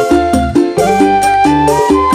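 Live dangdut band playing an instrumental passage. A bamboo suling flute carries a lead melody with pitch slides over bass notes and a drum beat.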